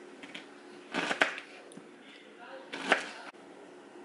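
Fresh pineapple being cut with a kitchen knife and the chunks dropped into a glass blender jar: two short bursts of sharp knocks and thuds, about a second and a half apart.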